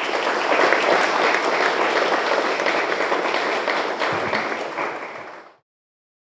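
Audience applauding steadily, many hands clapping at once; the applause fades and cuts off about five and a half seconds in.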